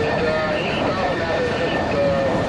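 Freight train's hopper and tank cars rolling past on curved track: a steady rumble of wheels on rail, with a wavering squeal over it.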